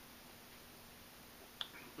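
Near silence with faint room tone while a sip of beer is taken, then a short click near the end, a lip smack after swallowing.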